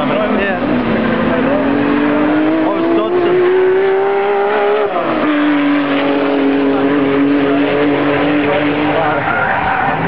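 Toyota Supra drift car's engine held high while the car slides, its pitch climbing steadily for about five seconds, then dropping sharply and holding steady at a lower pitch, with its tyres squealing.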